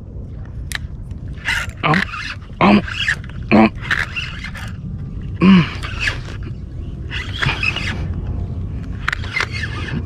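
A man's short wordless vocal sounds, four of them with falling pitch, over a steady low rumble of wind on the microphone.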